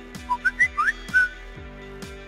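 Animated logo-sting sound effects: a quick run of five short whistle-like chirps, each rising in pitch, over a soft music bed with a low note that slides down in pitch about twice a second.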